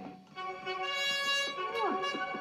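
Cartoon soundtrack music played through a TV speaker. After a brief dip, a steady held chord sounds, and a cartoon character's voice comes in near the end.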